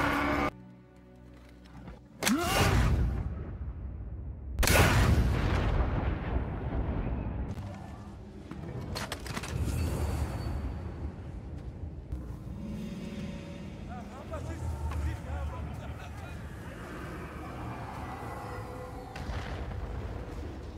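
Film soundtrack of sound effects and score. The sound drops out abruptly about half a second in, then comes a rising sweep with a heavy hit about two seconds in and another heavy hit near five seconds, followed by a low rumbling bed with music.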